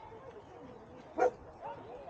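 A dog barks once, short and sharp, about a second in, over faint distant voices.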